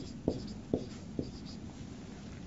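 Faint sounds of writing, three short strokes about half a second apart.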